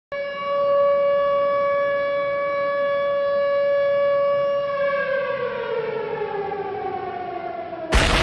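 A siren-like wail holds one steady pitch for about five seconds, then winds slowly down in pitch. Just before the end it is cut into by a sudden loud hit.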